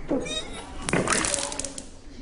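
A girl retching and vomiting: a strained, gagging vocal heave at the start, then a loud splattering gush from about a second in.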